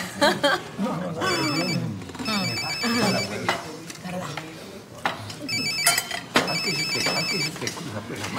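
A phone ringing with a trilling electronic ring, two rings then a pause, repeated, over voices at the table.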